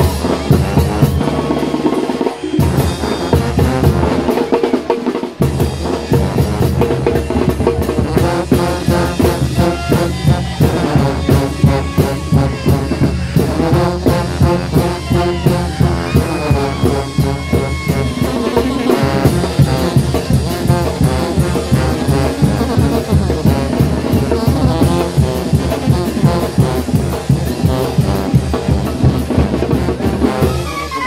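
Two Oaxacan brass bands playing together: massed sousaphones carry the bass line under brass and clarinets, over a steady drum beat.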